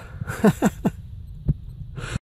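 A man chuckling, three short falling laughs about half a second in, over low thumping noise on the microphone, with a sharp knock about a second and a half in.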